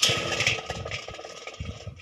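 A large yellow-brass bowl is turned over on gritty ground. There is a sudden scraping clatter that fades over about a second and a half, while the metal rings on in one steady tone.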